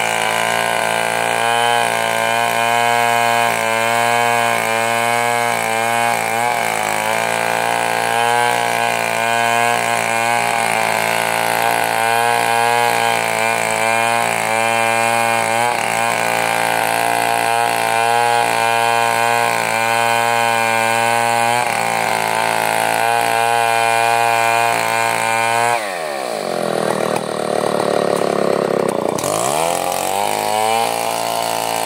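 Two-stroke chainsaw running at high revs under load, ripping lengthwise through a large bayur log. About four seconds before the end its revs fall away sharply, then climb back up.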